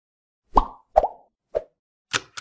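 Three short pop sound effects from an animated intro, each with a brief tone that quickly dies away; the third is softer.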